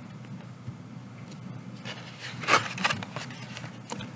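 A paperback picture book being opened: the cover and pages rustle and flap, in a short cluster of sharp rustles about two and a half seconds in.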